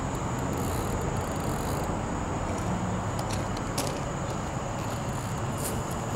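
Steady outdoor background rumble, with a thin, steady high-pitched whine above it and a few faint clicks.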